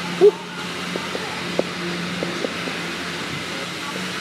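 Steady workshop hum and hiss with a constant low tone. A short voiced sound comes about a quarter second in, and a few faint clicks follow.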